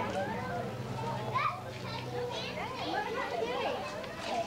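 Several young children chattering and calling out while they play, with no clear words. A steady low hum runs beneath them and stops about three seconds in.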